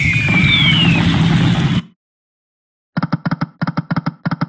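Shining Crown online slot game sound effects: a loud electronic win sound with falling glides cuts off suddenly just under two seconds in. After about a second of silence comes a rapid run of short electronic ticks, about seven a second.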